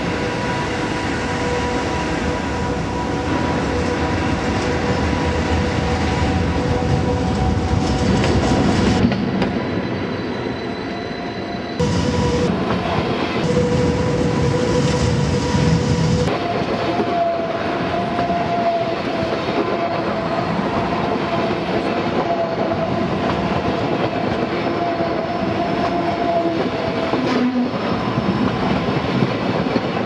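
SBB ICN (RABDe 500) tilting electric trainset running past, its electric drive giving steady whining tones over the rumble of wheels on the rails. The whine changes pitch abruptly a few times.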